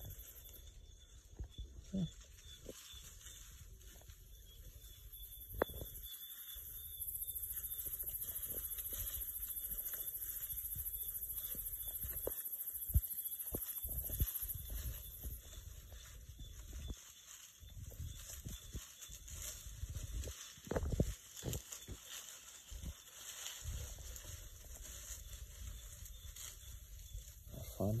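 Night insects trilling in a steady high-pitched band, louder for several seconds in the first half, with scattered soft rustles and knocks in the undergrowth where bushpigs are foraging.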